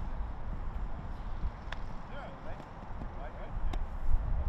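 Low, fluctuating rumble of wind on the microphone, with faint, indistinct voices and two short clicks, one a little before halfway and one near the end.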